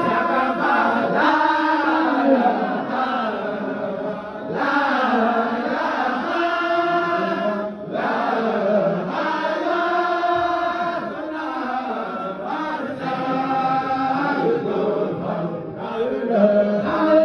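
A group of men chanting a Sufi dhikr in unison, unaccompanied voices only, in sung phrases broken by brief pauses.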